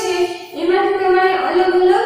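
A woman's voice in a sing-song chant, holding two long, nearly level notes, the second lasting more than a second.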